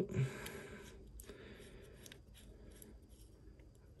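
Faint small clicks and scrapes of a stubby Wiha screwdriver turning a small screw into a folding knife's backspacer.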